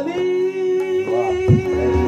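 Qawwali music: a man's voice holding one long note over a steady harmonium, with tabla strokes and a deep bayan stroke about one and a half seconds in.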